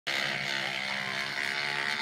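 Electric toothbrush running steadily while brushing teeth.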